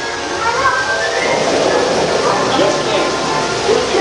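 Dark-ride soundtrack: music playing with indistinct voices mixed in, no clear words.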